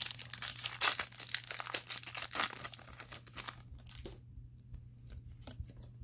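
A Pokémon card booster pack wrapper crinkling and tearing as it is ripped open by hand. The crinkling stops about three and a half seconds in, leaving only a few faint rustles.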